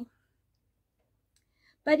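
Near silence between a woman's words: her speech ends right at the start and resumes near the end.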